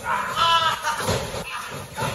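A man's brief, held vocal cry about half a second in, followed about a second in by a couple of dull thuds of bodies on a wrestling ring's mat.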